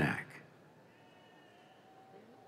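A man's voice over a loudspeaker finishing a graduate's name, cutting off a quarter second in, then a quiet, large hall with only faint, thin sounds.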